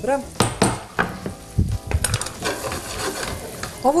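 Diced sausage sizzling in a frying pan while a knife scrapes and knocks against the pan, stirring the pieces; several sharp clinks stand out in the first half.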